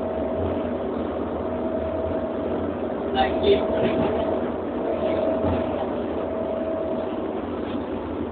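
Running noise inside a moving train carriage: a steady hum with a motor whine holding one pitch. A brief cluster of knocks comes a little over three seconds in.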